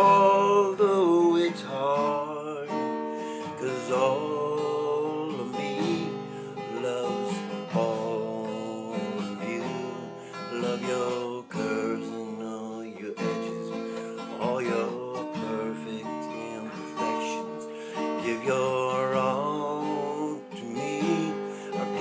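Acoustic guitar strummed steadily, with a man singing a slow love ballad over it.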